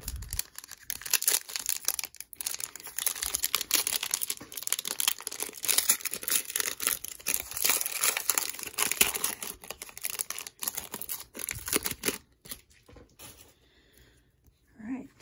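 A shiny 2020-21 Metal Universe hockey card pack wrapper being torn open and crinkled by hand, a dense, irregular crackle. The crinkling stops about two seconds before the end.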